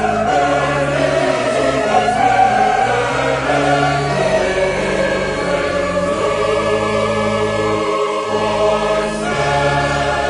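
Choir singing a slow sacred piece in sustained chords over accompaniment with steady low bass notes.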